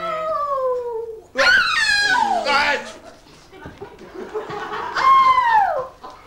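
A performer's voice crying out in long wordless wails that fall in pitch: one loud, high wail about a second and a half in, and another near the end.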